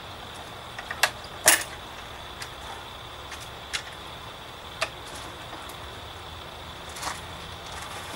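A few sharp clicks and knocks as a wooden pochade box is fitted onto a camera tripod and opened, the loudest about a second and a half in, over a steady faint background hiss.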